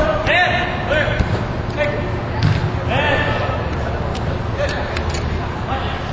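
Indoor soccer game: players' short shouts and calls echo around a large hall, over a steady low rumble, with a few sharp thumps of the ball being kicked.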